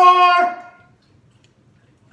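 A young man's short vocal sound, held on one pitch for about half a second and then dropping in pitch before it stops, all within the first second.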